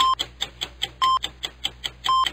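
Countdown timer sound effect: a short electronic beep once a second, with rapid clock-like ticks in between, over a low steady hum.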